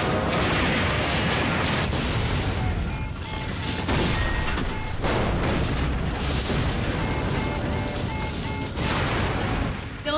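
Sci-fi battle sound effects: explosions and weapon-fire impacts hitting a starship, several sharp blasts among a continuous noisy din, over a dramatic music score.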